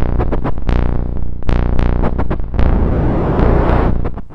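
Eurorack modular synthesizer patch with an analog monophonic synth voice playing a low, buzzy sequence of notes at an uneven rhythm, each note opening with a bright filter sweep that quickly closes. A hiss from the Zone B.F modulator's noise waveform swells in during the second half.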